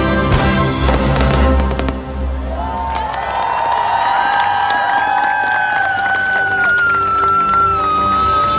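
Loud show soundtrack music from loudspeakers, with fireworks crackling and banging over heavy bass in the first two seconds. The music then swells into long held orchestral notes, the highest one slowly falling.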